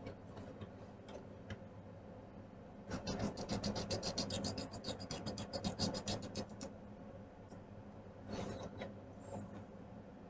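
Coloring strokes scratching on paper: a run of fast back-and-forth scribbling starts about three seconds in and lasts a few seconds, then a shorter run comes near the end.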